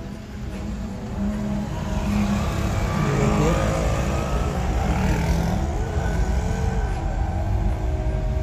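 Car engine and road noise in slow traffic, building from about a second in to a peak around the middle, then easing.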